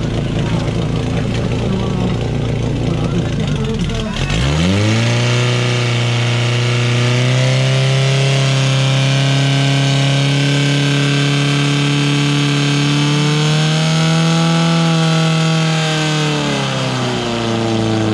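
Portable fire pump engine running rough and uneven, then about four seconds in it is throttled up sharply and settles into a loud, steady high-revving note as it pumps water into the attack hoses. Its pitch rises slightly partway through and dips near the end.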